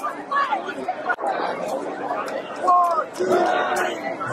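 Football crowd in the stands talking and shouting over one another, many voices at once, with one louder shout near the end.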